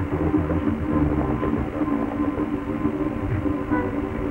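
Signalwave track: a steady droning chord of held tones over a churning low rumble, muffled with the treble cut away.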